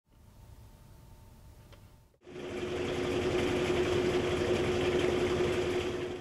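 Maytag MVWP575GW top-load washer spinning its tub: a steady machine whir with a constant hum, starting suddenly about two seconds in after a faint background hum.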